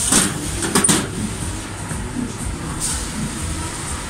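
A few clanks from the steel checker-plate walkway plates underfoot in the first second, then a steady low rumble.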